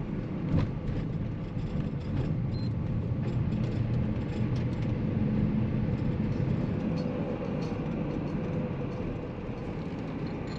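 A vehicle driving at low speed, heard from inside the cab: steady engine and road rumble. There is a single sharp knock about half a second in.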